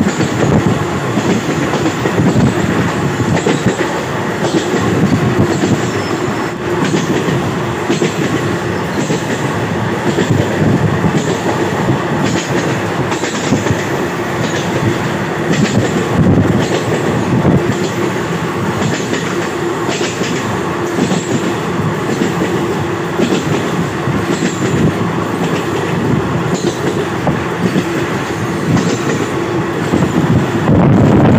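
Passenger train running at speed across a long rail bridge, heard from aboard through an open door or window: a steady rumble of wheels on rails with frequent, unevenly spaced clicks from the wheels over the rail joints.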